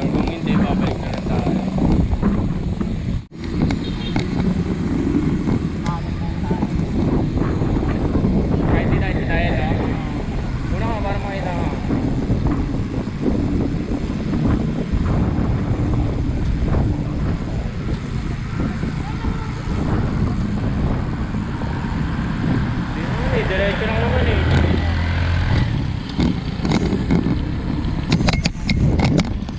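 Wind rushing over a handlebar-mounted camera's microphone while riding a bicycle on a road, with motor traffic passing and snatches of indistinct voices.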